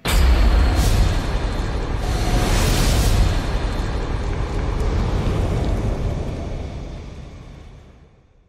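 Cinematic fire-and-explosion sound effect for a logo animation. It starts suddenly with a deep boom and runs on as a heavy rumble, with a whoosh about a second in and a larger swell around three seconds. It fades away over the last two seconds.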